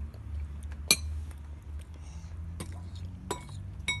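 A toddler's utensil clinking against a plastic bowl, with four sharp clicks: the loudest about a second in, then three more in the second half.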